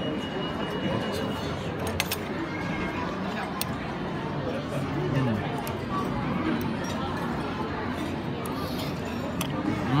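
Restaurant hubbub: steady background conversation of many diners, with a few sharp clinks of cutlery on plates, about two seconds in, again soon after, and near the end. A short "mm" from the person eating comes about five seconds in.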